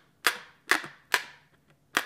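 Plastic wrap stretched tight over a glass bowl popping as the probe of a meat thermometer is pushed through it: four sharp pops, the first three about half a second apart.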